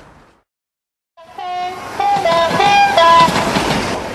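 A locomotive's horn sounding a run of alternating high and low notes over the running noise of the train, coming in suddenly about a second in after a moment of silence.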